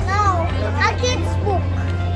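A young child's high voice with other children's voices, over background music and a steady low hum.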